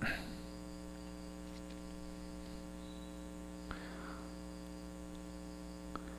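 Steady electrical mains hum with a buzzy row of overtones, picked up in the recording, with a faint brief rustle about four seconds in.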